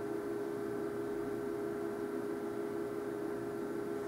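A steady, unchanging hum of a few even tones over quiet room tone, with no other event.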